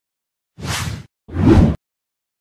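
Two whoosh sound effects of a logo intro, each about half a second long. The second is louder, with a deeper low end.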